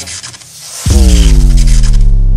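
Animated logo sting sound effect: crackling, scratchy noise, then about a second in a sudden loud deep bass hit that slowly sinks in pitch as it rings on.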